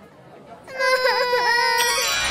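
Cartoon baby characters crying: a long wail starts under a second in and dips in pitch twice, and a second, higher cry joins near the end.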